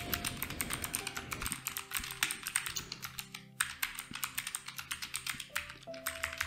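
Typing on a computer keyboard: quick, irregular key clicks as an email address and password are entered, with a short pause about halfway.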